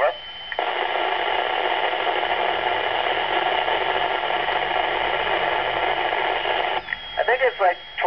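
Steady hiss of FM receiver noise from the speaker of a Yaesu FT-212RH 2 m transceiver. It starts about half a second in and cuts off near the end. The ISS downlink has paused after the astronaut's "Over", so only noise comes through. Near the end, a brief bit of radio voice returns.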